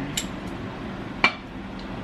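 Dishes clinking as food is moved from meal-prep containers into one bowl: a light clink just after the start and a sharper, louder one just past a second in.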